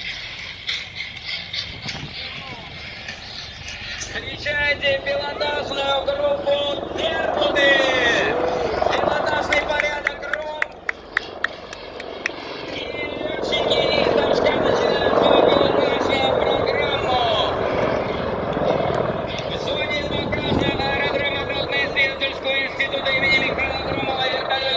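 Spectators' voices and chatter, with military helicopters heard approaching underneath, louder in the second half.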